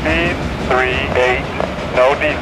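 Freight train moving away, its low rumble and wheel clatter going on under the sound of a person talking.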